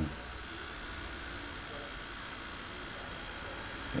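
Pen-style tattoo machine running at a steady low hum while the needle is drawn across skin.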